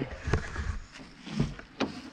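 Handling noise from a handheld camera being swung around: a low rumble with a few knocks, the sharpest near the end.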